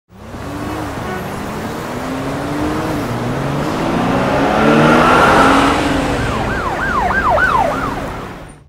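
A car-and-siren sound effect: a vehicle rushes by, swelling to its loudest about five seconds in, then a police siren wails in quick up-and-down sweeps, about three a second, near the end.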